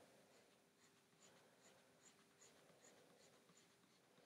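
Near silence, with the faint, regular light ticks of a stylus hatching strokes on a tablet screen, a little more than two a second.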